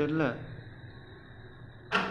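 A man's voice trailing off at the start, then a faint low hum, and a sudden sharp noise just before the end.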